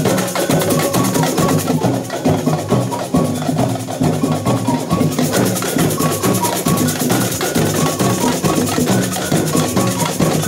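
Street percussion group playing live: large bass drums struck with mallets under snare-type drums and handheld percussion, keeping a steady, dense rhythm, with a short high note repeating through the beat.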